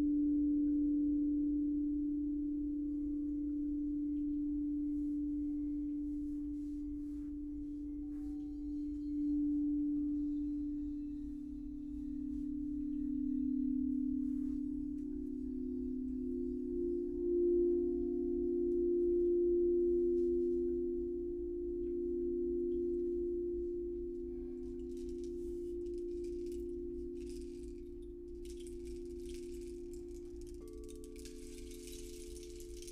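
Crystal singing bowls ringing in long sustained tones, a second, higher bowl tone joining the low one about halfway through, so the sound swells and fades slowly as the tones beat against each other. A faint high jingling comes in near the end.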